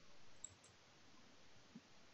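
Near silence: faint room tone with two faint computer-mouse clicks about half a second in.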